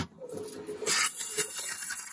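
A gas disconnect clicks onto the jumper line. Then comes a steady hissing rush for about a second and a half as fining solution, pushed by about 40 psi against a 15 psi keg, is forced from a carbonation-capped PET bottle through the gas jumper into the keg. The rush stops abruptly.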